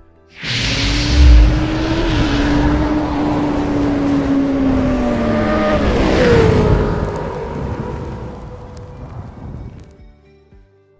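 Motorcycle engine sound effect: it starts abruptly with a low thump, holds a steady high rev, then drops sharply in pitch about six seconds in, like a bike speeding past, and fades away.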